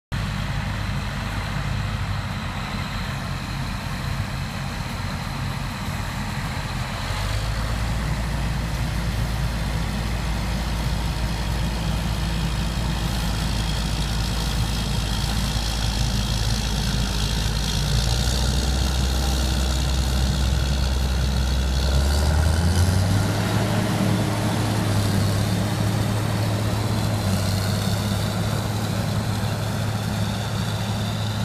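Four-wheel-drive tractor's diesel engine running steadily while pulling an air drill, its pitch stepping up about three-quarters of the way through as the engine revs higher.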